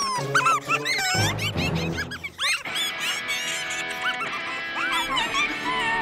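Cartoon slug creatures chattering in quick, high squeaky chirps that swoop up and down in pitch, over background music that settles into held notes about halfway through.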